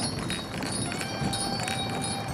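Harness bells on a horse-drawn carriage ringing, a clear held chime coming in about a second in, over the clopping of the horse's hooves on a dirt road.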